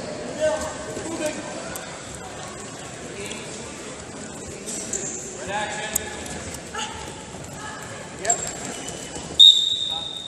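Voices calling out in a large echoing hall over scattered knocks and thuds from a freestyle wrestling bout. Near the end comes a sudden single blast of a referee's whistle, a steady shrill tone held for about a second.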